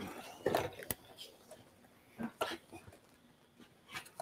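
A few brief knocks and scuffs from a camera on its stand being moved across a shop floor, with a sharp click about a second in.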